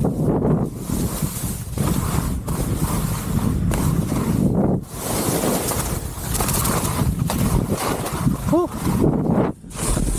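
Skis hissing and scraping through wet spring slush during a fast run, with wind buffeting the camera's microphone. The sound briefly drops out about five seconds in and again near the end, and a short pitched note sounds about eight and a half seconds in.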